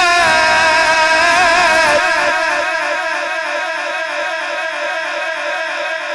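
A male qari's voice reciting the Quran through a microphone, holding one long, drawn-out note with a steady regular waver; it drops a little in loudness about two seconds in and carries on softer.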